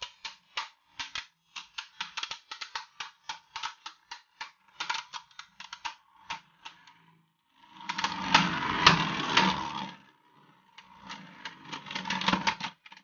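Two plastic Beyblade Burst spinning tops clashing in a plastic stadium: rapid, irregular sharp clicks as they strike each other. About eight seconds in comes a dense two-second rattling clatter. After a short pause the clicking picks up again near the end.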